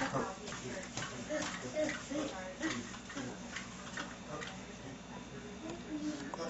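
A young child's wordless vocalizing in short, pitched bursts, mixed with light clicks and taps.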